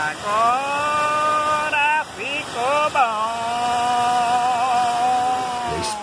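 Muddy floodwater rushing over a small reservoir's spillway wall, with a person's long drawn-out excited yells over it: three calls, the last held for about three seconds.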